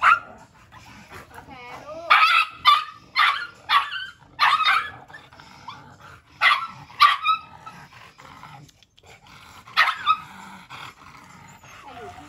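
Chihuahua yapping in short, high-pitched barks: one at the start, a quick run of four about two seconds in, then a few more spaced out, with a faint whine between.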